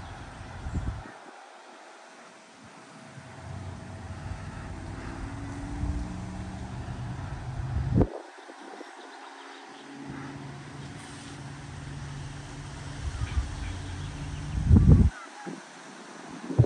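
Gusty wind buffeting the microphone in low rumbles that swell and then cut off sharply three times, over a faint hiss of wind through tree leaves.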